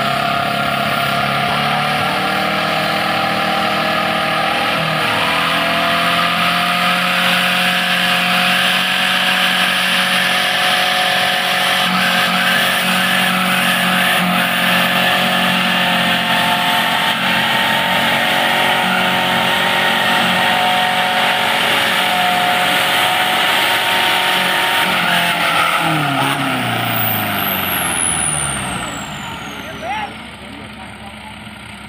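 Off-road pickup's diesel engine held at high revs under heavy load, grinding through a mud pit and pouring black smoke. The revs step up about five seconds in, hold high and steady for about twenty seconds, then fall away near the end.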